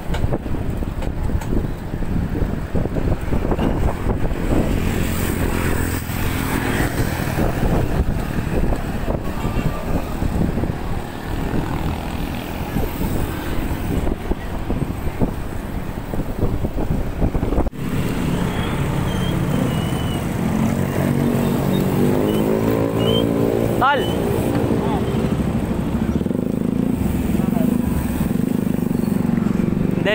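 Traffic and wind noise heard from a moving bicycle: a dense low rumble of passing vehicles and air on the microphone. After an edit about 18 seconds in, a motor vehicle's engine runs close by, its pitch rising and falling for a few seconds.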